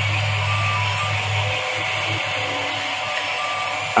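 Filament 3D printer running mid-print, with a steady fan hiss, a low hum that drops away about one and a half seconds in, and a few brief motor whines as the print head moves.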